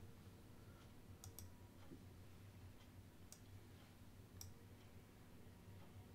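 Near silence with about four faint, spread-out clicks of a computer mouse.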